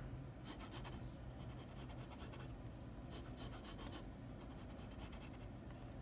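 Pencil sketching on sketchbook paper: several short, scratchy strokes with brief pauses between them as leg outlines are drawn.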